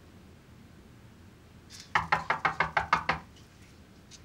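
Knuckles knocking on an apartment door: a quick run of about ten raps lasting just over a second, starting about halfway through.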